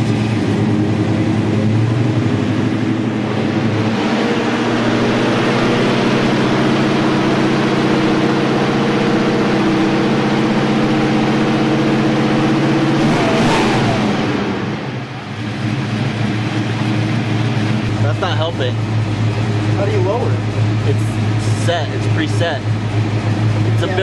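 1968 Dodge Charger's Mopar 440 big-block V8, on Edelbrock fuel injection, held steady at raised revs of about two thousand rpm for about thirteen seconds while its air-fuel ratio is checked. The revs then fall away and it settles into a steady idle of around 800 rpm.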